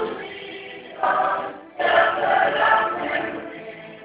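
Mixed boys' and girls' youth choir singing gospel in short phrases, each line breaking off briefly before the next.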